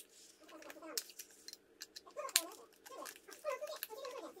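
Scattered sharp clicks and light handling noise from a fabric strap being fitted onto the plastic band of an EMS face-lift device.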